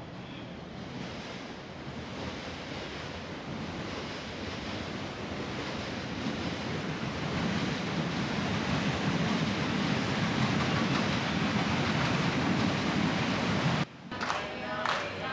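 Steady rushing outdoor wind noise on the microphone. It grows gradually louder, with a deeper rumble building up, and cuts off suddenly just before the end.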